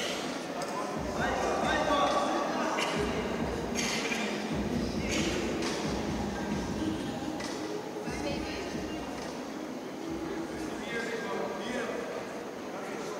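Indistinct voices of people talking and calling out, echoing in a large hall, with a few sharp knocks.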